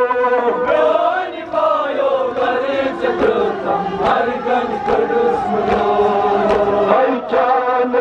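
Men's voices chanting a Kashmiri noha, a Shia mourning lament, amplified through a microphone, in long held notes that waver up and down in pitch.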